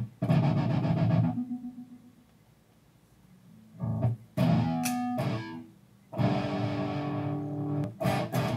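Gibson Les Paul Classic electric guitar played through an amp with a little distortion: a chord struck and left to ring until it fades, a quiet pause, then a few short chord stabs and a long held chord near the end.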